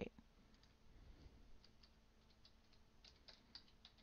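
Faint, quick clicks of a computer's inputs as a subtraction is entered into calculator software, a run of about eight in the second half over a quiet background.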